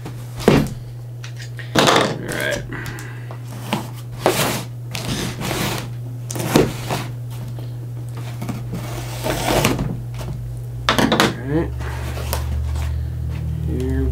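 Utility knife slitting the packing tape on a cardboard box: a string of short scrapes and knocks on the cardboard, with one longer slit lasting about a second two-thirds of the way through. A steady low hum runs underneath.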